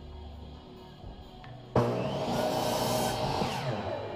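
Electric miter saw cutting through a wooden board: the motor starts suddenly and loudly about two seconds in, and its pitch falls as the cut goes on. Background music plays throughout.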